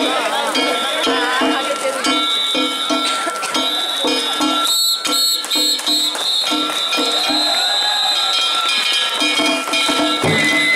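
A danjiri float's festival music: small hand gongs (kane) ringing and the drum beating in a steady, rapid rhythm of about three strokes a second, over the shouts of a crowd.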